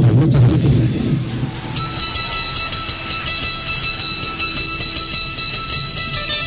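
Live Andean folk band music starting up. A voice is heard briefly at the opening, then fast strummed string music with a quick even pulse comes in abruptly about two seconds in.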